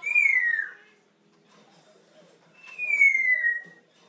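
African grey parrot whistling: two long whistles, each sliding down in pitch, the first at the start and the second about two and a half seconds later.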